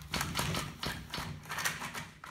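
Recoil starter of a Stihl string trimmer being worked: the rope is pulled out and let back in, turning the engine over with a quick, uneven run of clicks. The pulls are working freshly sprayed lubricant into a sticky, dry starter spring.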